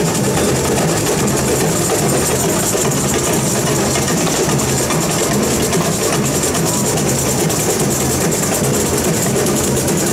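Samba percussion band playing: drums under a fast, even high rattle of shakers.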